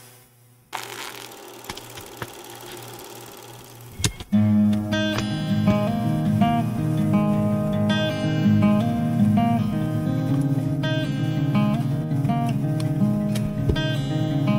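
Solo acoustic guitar, fingerpicked, starting about four seconds in after a faint hiss.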